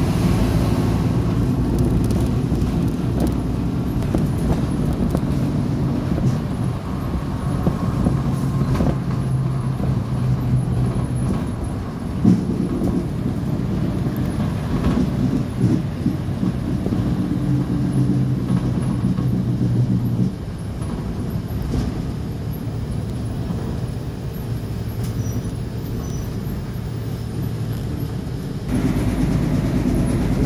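City bus running, heard from inside the cabin: a steady low engine hum with road noise, its pitch holding and shifting as it drives. There is a sharp knock about twelve seconds in, and the sound drops a little quieter about twenty seconds in.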